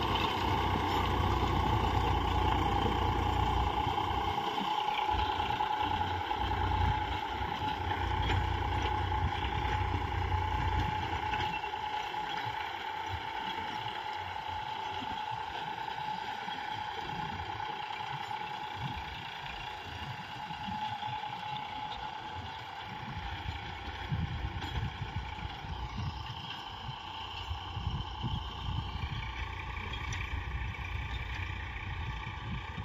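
Eicher 485 tractor's three-cylinder diesel engine working under load, driving a Shaktiman rotavator through the soil. The steady drone grows gradually fainter over the first two-thirds as the tractor draws away, then holds.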